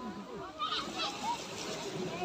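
Voices of many bathers calling and chattering, children among them, over small waves splashing onto the shore.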